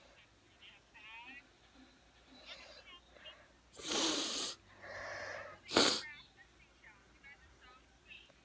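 A person sneezes: a loud breathy intake about four seconds in, a softer drawn-out sound, then the sharp sneeze just before six seconds in. Faint speech from a laptop's speakers runs underneath.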